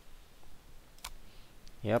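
A computer mouse button clicked once, sharply, about a second in, followed by a fainter tick.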